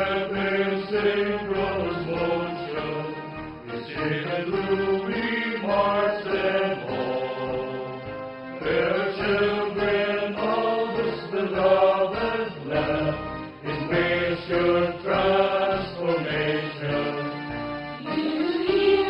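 Recorded song playing: voices singing a slow, hymn-like melody in long held notes over instrumental backing.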